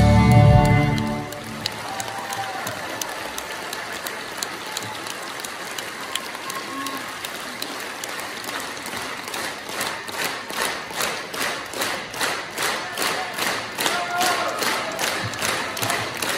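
A live rock band's song ends on a held final chord that cuts off about a second in, followed by a concert-hall audience applauding. About ten seconds in, the applause turns into rhythmic clapping in unison, about two claps a second, growing louder.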